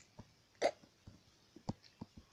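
A single short throat sound from a boy, like a hiccup, about half a second in, with a couple of faint mouth or handling clicks around it.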